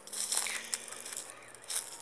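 Close, irregular crunching and rustling as a handheld phone is swung about and brushes against a jacket while walking through bush.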